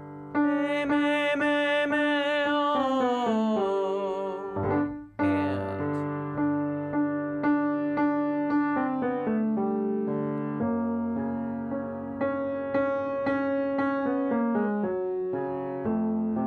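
A tenor voice sings a held note with vibrato, then steps down a scale, over Yamaha grand piano chords. Just after a short gap about five seconds in, the piano starts the pattern again with evenly repeated notes and chords.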